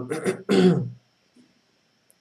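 A man clearing his throat: two short rough bursts in quick succession within the first second.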